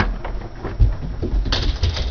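A sudden clatter as a person leaps up from a desk, then running footsteps thudding on a hard floor. Short, high, squeaky sounds join in halfway through.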